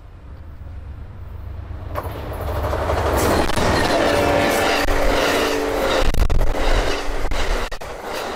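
Amtrak Southwest Chief passenger train passing close at speed. The GE P42DC diesel locomotives build up and go by, with a steady engine drone at its loudest about three seconds in. Then the Superliner cars follow, their wheels clicking over the rail joints.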